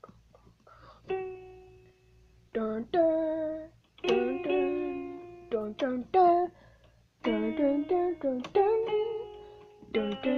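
Electronic keyboard playing a simple melody in short phrases, each note struck and left to fade, with brief pauses about two seconds in and again about seven seconds in.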